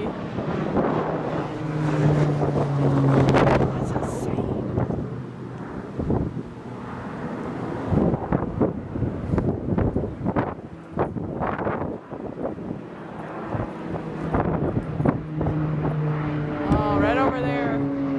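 Propeller engines of a low-flying firefighting air tanker droning overhead, the hum swelling in twice as the plane passes, with wind gusting on the microphone.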